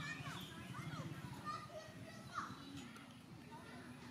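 Background chatter of many people with children's voices mixed in, and a few short high chirping calls that rise and fall above it.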